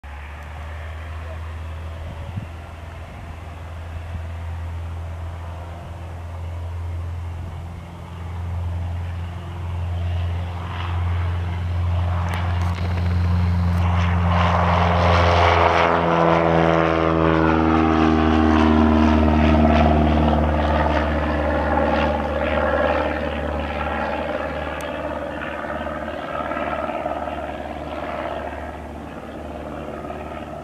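1979 Cessna 172N Skyhawk's four-cylinder Lycoming engine and propeller running at takeoff power. The drone builds as the plane rolls and lifts off, is loudest as it passes overhead about halfway through, then drops in pitch and fades as it climbs away.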